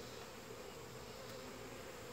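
Honey bees buzzing around an open hive: a faint, steady hum.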